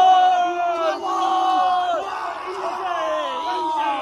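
Several men yelling together in long, drawn-out celebratory shouts, a few voices overlapping, each shout held for a second or more and sagging a little in pitch.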